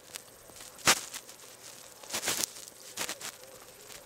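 Handheld radio scanner being worked into a tight-fitting canvas holster with a thick clear plastic front: a single sharp click about a second in, then short scraping and crinkling handling noises.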